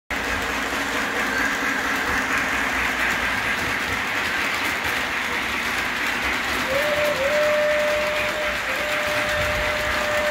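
Model trains running on a layout, giving a steady rolling rumble and hiss. About two-thirds of the way in a locomotive sounds a long single-pitched signal tone, broken twice briefly.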